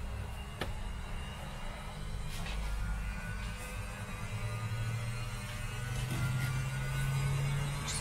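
Washing machine running, a steady low hum whose pitch rises slowly over the second half, with a few light clicks over it.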